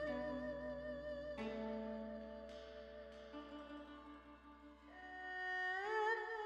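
Soft background music: a slow melody of held notes with vibrato, dipping quieter partway through and swelling again near the end.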